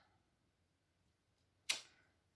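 Near silence while a stamp is pressed by hand onto paper. Near the end comes a single short, sudden noise that fades quickly.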